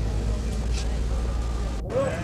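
A steady low rumble with faint voices over it. The sound drops out briefly near the end.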